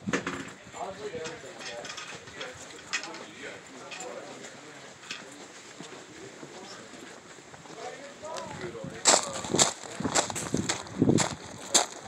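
Footsteps walking at a steady pace: soft steps on concrete, then louder, crunching steps on gravel from about nine seconds in.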